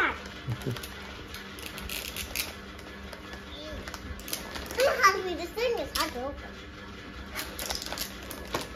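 Foil gift-wrapping paper crinkling and rustling in short crackles as a child tears at and handles it, with a child laughing and talking briefly around the middle.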